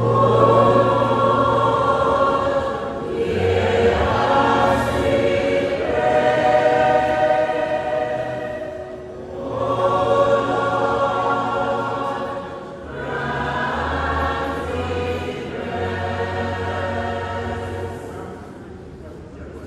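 Church choir singing a hymn in long, held phrases, with low sustained bass notes underneath.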